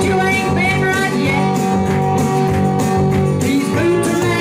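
A woman singing a song into a handheld microphone over steady instrumental backing with guitar.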